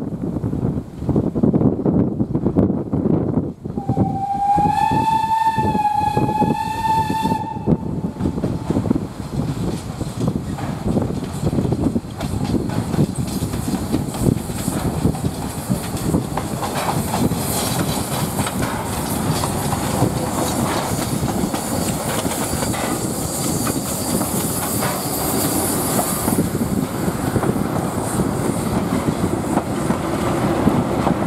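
Px29-1704 narrow-gauge steam locomotive working a passenger train past at close range, its exhaust beating steadily. About four seconds in it sounds one steam-whistle blast lasting about four seconds, then the engine and coaches roll by with wheel clatter on the rails.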